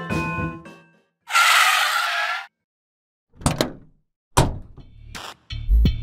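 Soft melodic background music fades out, then a loud hissing burst of noise lasting about a second. After a short gap come a series of sharp hits with low thumps, about four of them, as new music starts.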